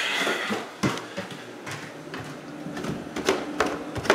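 Footsteps knocking on basement stairs, with a dehumidifier running in a steady hum that becomes clearer about halfway through.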